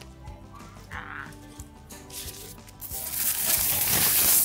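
Background music with a steady beat. From about two and a half seconds in, a loud papery rustle builds as a paper napkin is rubbed across a mouth.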